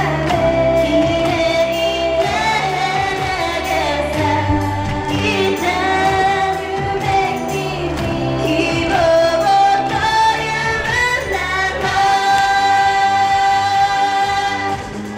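Female vocal group singing a Japanese pop song live into handheld microphones, with backing music and a steady beat; a long held note near the end.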